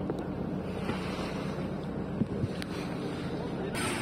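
Steady rush of wind on the microphone and sea noise aboard a small open boat on choppy water, with a low hum underneath.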